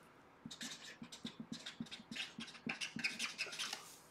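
Hands rubbed briskly together to warm them: a quick, uneven run of faint dry swishing strokes, several a second.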